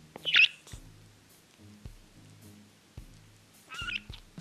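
Budgerigar giving a short chirp early on and another chirp near the end, over background music with a soft beat.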